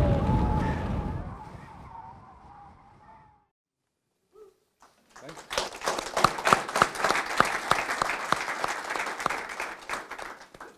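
The tail of the video's soundtrack fades out over the first few seconds, followed by a brief silence. An audience then applauds, loudest a second or two after it starts and thinning toward the end.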